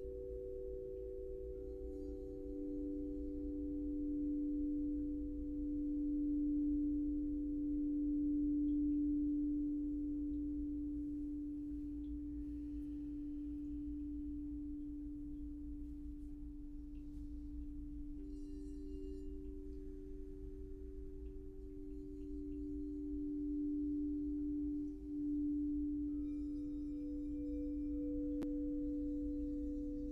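Crystal singing bowls ringing together: three sustained, overlapping tones, the lowest the loudest, slowly swelling and fading. One bowl's tone comes in again about two-thirds of the way through.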